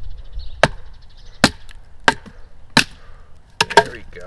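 A wooden baton knocks about six times on the spine of a Cold Steel bowie knife, driving the blade down through a stick of wood to split it. The strikes come roughly one every two-thirds of a second, with the last two close together near the end.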